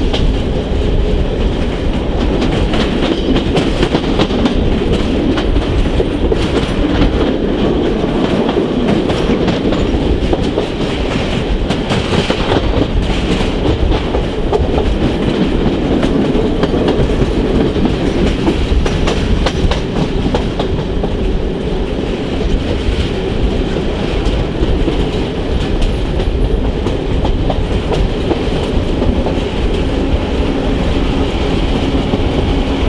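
Locomotive-hauled passenger train running, heard from an open coach window: a steady rumble of wheels and engine, with wheels clicking over rail joints and points, most often about twelve seconds in.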